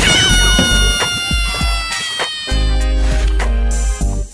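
Comedic sound effect laid over background music: a sudden hit, then a long wailing, cat-like call that slides slowly down in pitch for about two seconds. The music's steady bass returns about two and a half seconds in.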